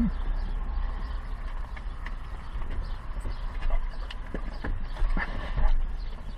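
Steady low rumble of a parked vehicle's cab, with scattered small clicks and crinkles from a paper food wrapper being handled and a breakfast sandwich being eaten.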